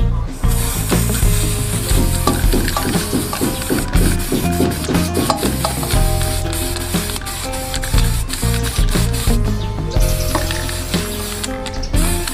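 Aerosol spray-paint can hissing in one long continuous spray that stops shortly before the end, over background music.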